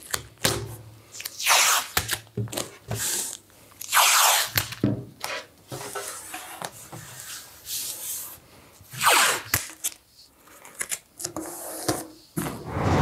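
Masking tape pulled off the roll in several short rips and rubbed down by hand along the edges of a spoiler panel, masking it before spraying.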